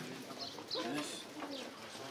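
A dove cooing, with a few high chirps from small birds and murmured voices behind.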